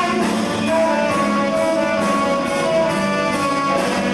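Live band playing an instrumental passage: a saxophone plays held melody notes over electric guitars, keyboard and drums keeping a steady beat.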